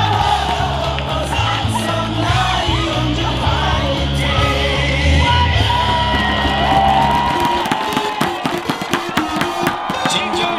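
A baseball cheer song with a heavy bass beat plays over the stadium speakers while a crowd of fans sings and shouts along. About two and a half seconds before the end the bass drops out, leaving the crowd chanting over rapid sharp claps.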